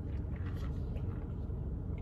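Steady low rumble inside a parked car's cabin, with faint sipping sounds from a plastic cup of soda in the first second.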